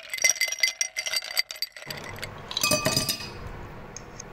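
Ice cubes tumbling out of a ceramic jug into a drinking glass, clinking against the glass: a quick run of clinks over the first two seconds, then another cluster about three seconds in.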